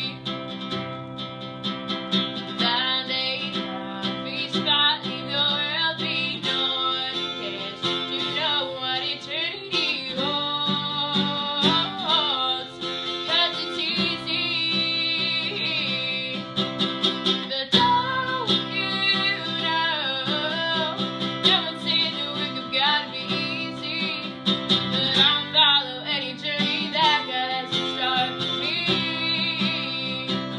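A woman singing solo, accompanying herself on a strummed acoustic guitar.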